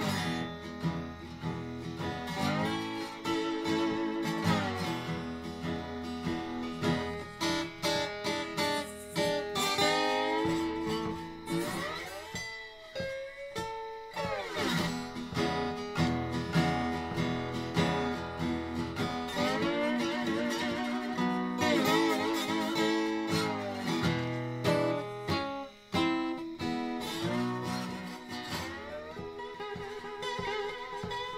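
Background music: a slide guitar piece, with its notes gliding in pitch.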